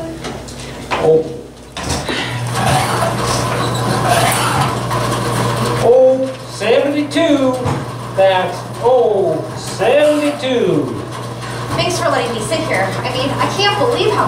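Indistinct speech that the recogniser could not make out, over a steady low hum.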